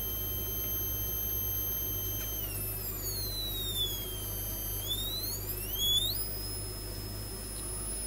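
High electronic tone from a home-made pulse width modulator circuit: steady at first, it slides down in pitch a couple of seconds in, rises back up, and settles at a higher steady pitch, as the pulse timing is changed with the circuit's variable resistors. A low steady hum runs underneath.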